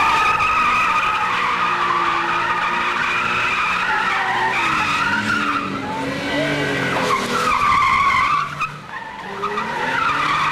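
A drifting car's tyres squealing in a long, continuous screech as it slides and spins, with the engine's wavering pitch underneath. The squeal breaks off briefly about a second before the end, then starts again.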